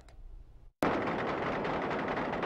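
Rapid gunfire from soldiers' rifles in combat, cutting in suddenly a little under a second in after a brief silence.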